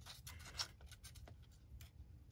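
Faint rustling and a few light ticks of a paper sticker sheet being handled and turned over by hand.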